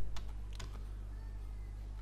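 About four quick clicks from a computer in the first second, as the slide is advanced, over a steady low electrical hum.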